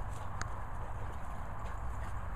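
A dog panting in soft, rapid breaths over a steady low rumble, with one brief high squeak about half a second in.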